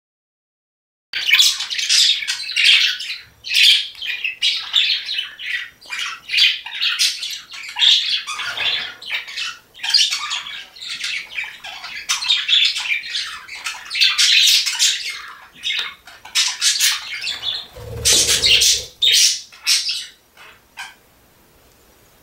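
Budgerigar chattering: a long run of short, rapid, high-pitched calls that starts about a second in and tails off a little before the end.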